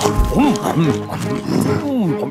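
Cartoon panda characters' wordless vocal sounds, a series of short rising-and-falling grunts and hums as they eat bamboo, over background music.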